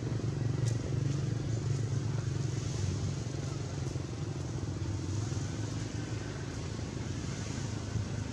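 A motor engine running steadily, a low even hum.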